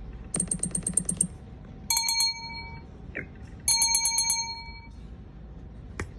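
macOS alert sounds played through a MacBook Pro's built-in speakers as they are previewed from the Sound Effects list, testing the speakers: first a rapid run of about nine short pulses, then a bright ringing chime heard twice.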